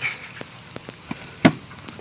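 Air filter box lid clip being worked loose by hand: a few light clicks, then one sharp snap about one and a half seconds in as the clip releases.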